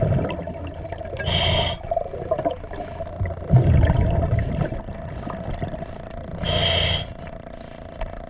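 A diver breathing underwater through a scuba regulator: two short hissing inhalations, about a second and a half in and again near the end, with a rumbling gush of exhaled bubbles between them.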